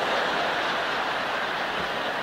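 A large theatre audience laughing together, a steady, even wash of many voices with no single voice standing out.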